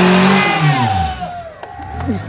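Rock crawler buggy's engine revving hard under load as it claws up a steep rock face, with a rushing hiss as the tyres churn dirt. About a second in the revs fall away and the engine drops back, leaving a few sharp clicks.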